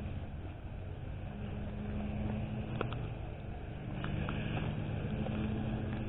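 Low, steady hum of a motor vehicle engine, its pitch shifting slightly, with a few faint clicks.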